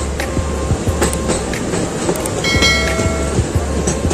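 Railway coaches passing close alongside at speed: a dense, steady rumble of wheels on rail with repeated clicks of the wheels over rail joints. A short steady tone sounds for under a second about two and a half seconds in.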